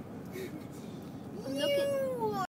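Steady road and engine rumble inside a moving car. About one and a half seconds in, a high, drawn-out voice starts and slides down in pitch.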